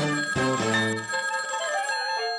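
Title jingle music with a ringing telephone bell mixed in: a run of pitched notes over a steady high ringing.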